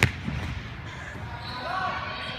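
A futsal ball hitting the hardwood gym floor with a sharp smack at the very start, then a softer thud a moment later.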